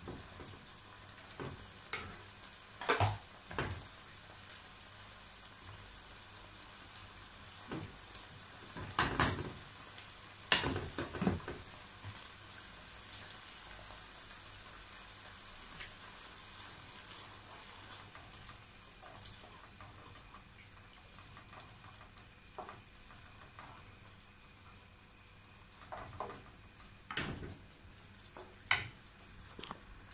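Tomato sauce frying in a pan with a faint steady sizzle, broken by sharp clicks and knocks of cooking utensils against a metal pot and its lid, the loudest about nine to eleven seconds in and again near the end.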